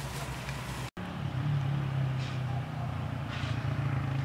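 A steady low engine-like hum. The sound drops out for an instant just under a second in, then the hum continues a little louder, with faint high rustling twice.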